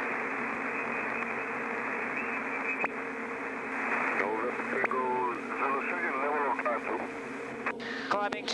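Aircraft radio reception over the cockpit audio: a steady, thin static hiss with an air traffic controller's garbled reply coming through about halfway in. The low steady hum of the Kodiak 100's turboprop engine runs underneath.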